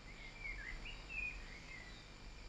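Faint bird song in the background: a short run of chirping, warbling notes that wander up and down in pitch, over quiet outdoor ambience.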